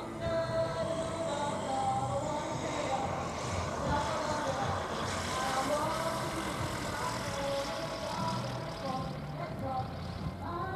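A low-wing light aircraft's engine running at low power as it comes in to land, with indistinct voices talking over it.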